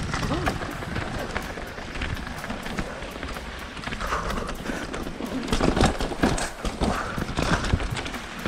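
Full-suspension mountain bike, a 2017 Diamondback Atroz Comp, clattering and rattling as its tyres, chain and frame take rocks and roots on a singletrack trail, heard close up through a bike- or rider-mounted action camera. The knocks get denser and louder over the second half.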